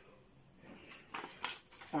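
A sheet of cut printer paper rustling as it is handled, in a few short bursts about a second in.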